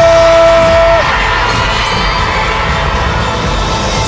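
A studio audience cheering over a burst of show music, loud throughout. A man's voice holds one long drawn-out final word through the first second.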